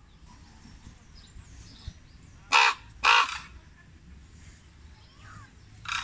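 Common raven calling: two loud, harsh calls about half a second apart a little before the middle, and another beginning right at the end.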